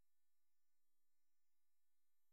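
Near silence, with only a very faint steady tone.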